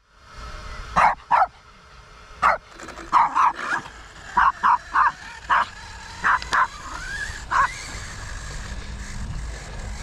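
A dog barking in short, sharp yips, about a dozen of them over the first eight seconds, with a steady low hum underneath.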